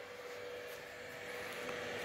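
Faint steady hum of a running LED mini projector's cooling fan, with one thin, even tone held throughout.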